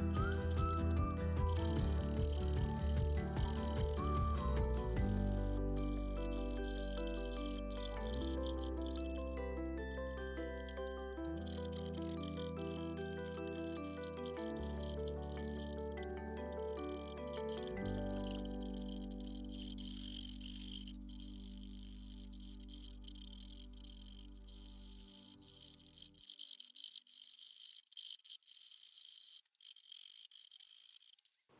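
Background music of slow sustained chords, fading out about 26 s in. Under it runs the faint rasp of a small hand saw cutting thin hinoki (Japanese cypress) board in short strokes; the strokes stand out on their own in the last few seconds.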